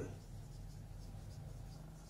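Marker pen writing on a whiteboard: a string of faint short strokes as a word is written, over a low steady hum.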